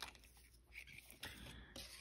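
Near silence, with faint handling noise: a few soft plastic ticks and rustles as the protective plastic tube comes off a new acrylic nail brush.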